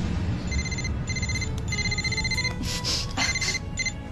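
Mobile phone ringing: an electronic ringtone of rapid high beeps in repeated short bursts.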